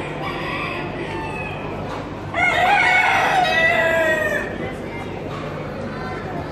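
Rooster crowing once: a loud call of about two seconds that starts a little over two seconds in, falling in pitch toward its end.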